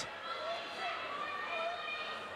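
Faint, overlapping voices of spectators talking and calling out around an MMA cage, under a steady room murmur.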